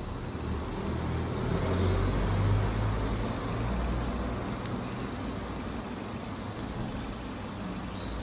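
A low background rumble under a faint hiss, swelling about two seconds in and slowly easing off, with one faint click about four and a half seconds in.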